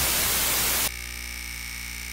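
Electronic static sound effect: a loud, even white-noise hiss that drops abruptly about a second in to a quieter hiss with faint steady tones running through it.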